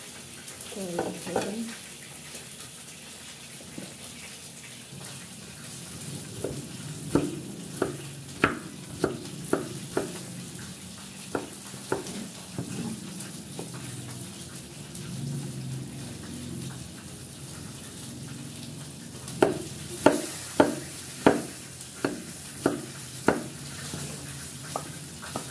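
A cleaver chopping bamboo shoots on a thick wooden chopping block. The knocks come in a run through the middle, then a steadier run of about seven near the end, over a steady hiss.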